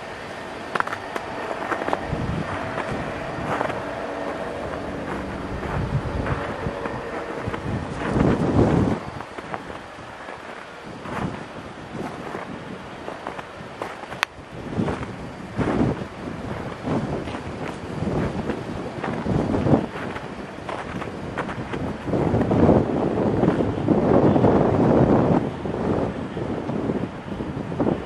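Wind buffeting a handheld microphone outdoors, in uneven rushes that come and go, heaviest in the last several seconds.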